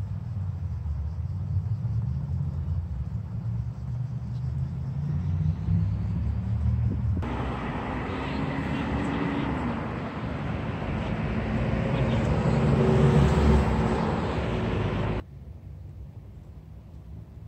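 Motor vehicle noise: a low rumble that switches abruptly about seven seconds in to a louder, fuller sound with engine tones, loudest near the end, then cuts off suddenly.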